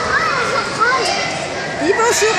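Children's voices: high-pitched calls and chatter that rise and fall in pitch.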